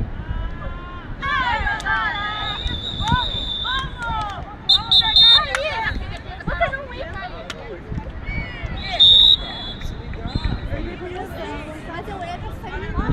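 Shouting voices of players and spectators around a beach handball court, with a referee's whistle blowing a loud short blast twice about five seconds in and once more about nine seconds in.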